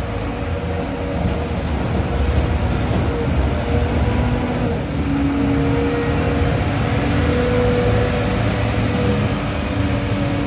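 Volvo wheel loader's diesel engine running under load as its plow blade pushes heavy snow: a steady low rumble with a faint held whine over it.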